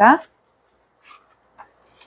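A single spoken word, then a quiet room with two faint, short rustles, about a second in and again a little later: the paper pages of a book being handled.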